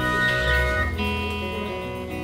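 Live band playing, with an acoustic guitar strummed over bass and drums. About a second in the drums stop and held notes ring on, growing quieter.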